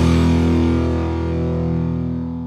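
Outro rock music ending on a held distorted electric-guitar chord that rings on and slowly fades.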